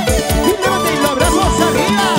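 Live Andean band music: a Peruvian bandurria strummed over a steady drum beat.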